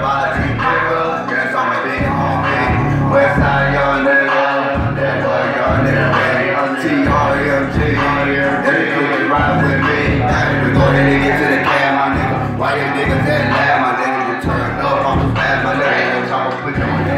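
Live hip-hop performance: a backing track with a heavy bass pattern repeating in blocks of about two seconds, and a man rapping over it into a handheld microphone.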